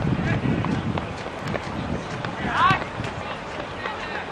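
Football players shouting to each other during play, with one loud, high, wavering call a little past halfway, amid scattered short knocks of footfalls and the ball.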